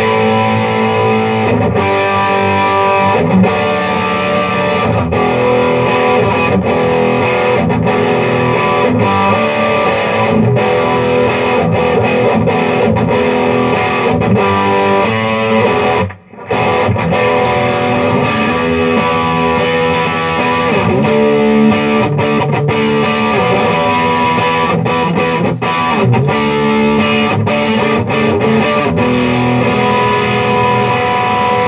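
Parker PDF70 electric guitar with Duncan humbucker pickups played through an amplifier set to a little bit of overdrive: continuous riffs and chords, with one brief break about halfway through.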